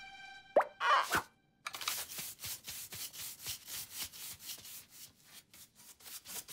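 Cartoon sound effects: a fading musical note, then a quick descending pop about half a second in and a second downward swoop. After a short gap comes a steady run of short scuffing, brushing strokes, about three or four a second.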